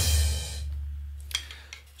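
Electronic drum kit's final cymbal crash ringing out and fading away over about a second, with a low tone dying under it. There is one faint tap about halfway through.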